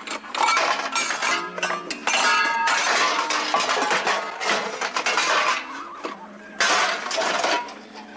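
Metal pots and pans clattering and clinking as they are handled and set down on a wooden table, over background music.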